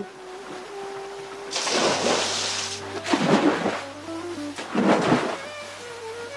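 A man snoring three times, the first snore long and hissy, the next two shorter and deeper, over soft background music.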